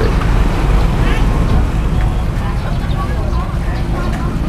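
Busy street-market background: a steady low rumble with faint, scattered voices of people nearby.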